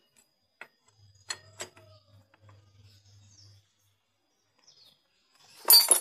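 Steel hand tools clinking against the scooter's CVT clutch: a few light metallic clicks in the first couple of seconds, then a louder short metal clatter near the end.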